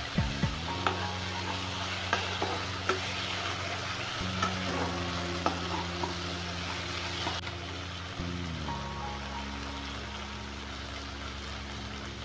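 Tomato masala sizzling in a non-stick frying pan as it is stirred with a slotted metal spatula. Sharp clicks and scrapes of the spatula against the pan come in quick succession during the first few seconds, then more sparsely.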